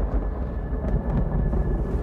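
A deep, continuous low rumble, like rolling thunder, with a faint steady high tone above it.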